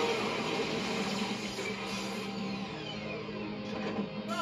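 Television sound effects of an energy blast and explosion hitting a giant monster: a dense, steady rush of noise with a low hum underneath, heard through a TV's speaker.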